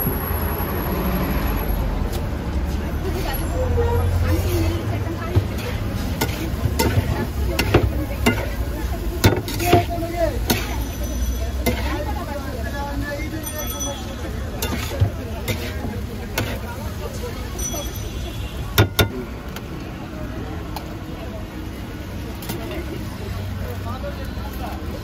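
Street-stall ambience: a steady low rumble of traffic and background voices, with scattered sharp clicks and clatters of metal utensils and dishes as noodles are mixed in a metal pan and plated. The clicks come mostly in the first half, with a sharp double click near the end.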